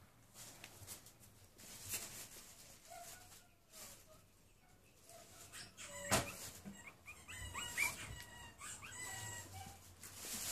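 Newborn puppies squeaking and whimpering while nursing: a few faint calls early, then a quick run of short high-pitched squeaks in the second half. A single sharp knock about six seconds in.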